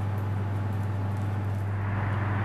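Steady low hum over quiet room tone, with no distinct knocks or clinks.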